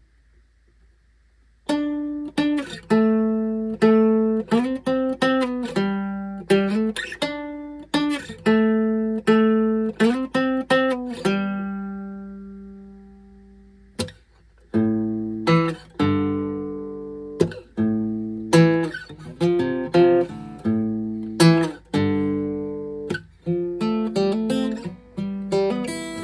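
Solo acoustic guitar played as a song introduction: after a brief hush, picked notes and chords ring out. Near the middle a chord is left to ring and fade for a few seconds, then the picking resumes with a fuller bass.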